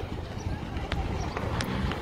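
Low engine rumble of an ambulance van driving slowly up the road toward the camera, with faint voices in the background.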